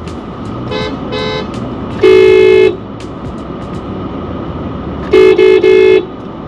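Car horn sounding at a closed gate to call someone to open it: two short, fainter beeps about a second in, then one long loud blast, then three quick blasts near the end.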